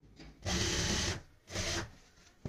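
Industrial single-needle sewing machine running in two short bursts of stitching, the first a little under a second long and the second shorter just after it, as it sews down a folded elastic waistband.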